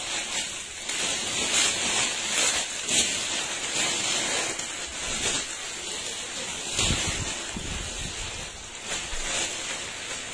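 Clothing fabric rustling close to the microphone as a jacket is pulled off and another jacket is handled and shaken out: a rushing hiss with uneven surges, and a low thump about seven seconds in.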